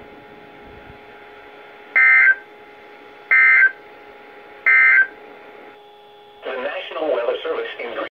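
NOAA Weather Radio end-of-message signal: three short bursts of digital data tones, evenly spaced about 1.3 s apart, over steady radio hiss. This marks the end of the tornado warning broadcast. A voice comes back in near the end.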